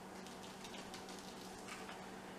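Quiet: a faint steady low hum, with light irregular ticks as ground paprika is shaken from a spice jar onto a paper plate.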